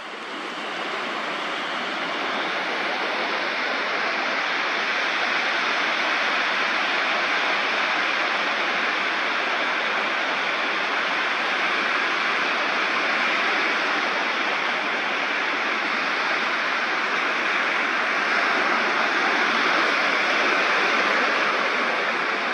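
Ocean surf breaking and washing up a sandy beach: a steady rushing hiss of foaming water that swells up over the first second or two and then holds level.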